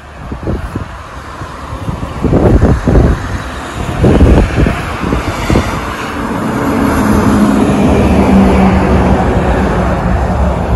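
A motor vehicle's engine hum that grows louder and then holds steady through the second half, over low thumping rumble like wind buffeting the microphone.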